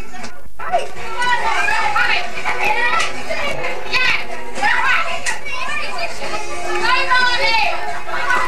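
A group of young people's voices talking, shouting and laughing over one another in lively chatter; the sound drops out briefly just after the start, at a tape cut.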